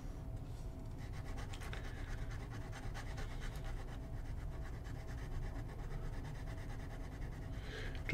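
Fountain pen nib of a Parker Challenger scratching on paper in quick, repeated short strokes as it hatches in an ink swatch. Faint, with a steady low room hum beneath.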